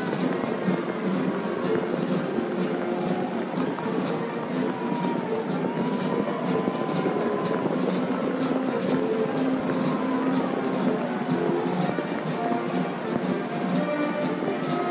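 Band music with long held notes, heard through a dense, steady outdoor background noise.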